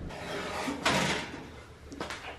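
A single knock or clunk of something being handled, a little under a second in, over faint room noise.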